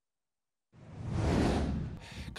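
A whoosh sound effect for an animated title-card transition. It follows total silence, swells up about three-quarters of a second in, and fades away near the end.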